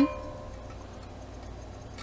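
Titanium camping pot ringing briefly after being knocked, two clear tones fading away within about half a second. After that there is only low room noise with a faint hum.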